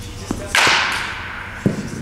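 A baseball bat strikes a pitched ball with a sharp crack about half a second in, and the ring fades over about half a second. A dull thud follows about a second later.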